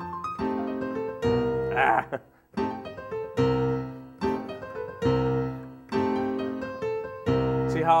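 Piano playing a stride passage slowly: separate chords and bass notes struck roughly once a second, each left to ring and fade before the next.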